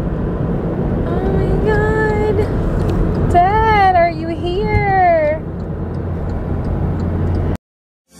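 Steady road and engine rumble inside a moving car. A person's voice makes a few drawn-out, wavering sounds between about one and five seconds in. The sound cuts off abruptly near the end.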